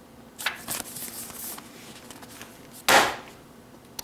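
Paper rustling as the pages and soft cover of a thin paperback book are handled, then a single loud slap about three seconds in as the book is put down on a desk.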